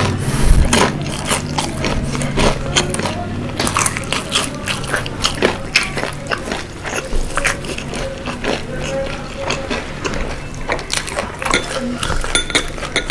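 Close-miked wet chewing of sauce-glazed crispy fried chicken, with many small clicks and smacks. This is followed by gloved hands pulling a piece of the chicken apart, with sticky crackling.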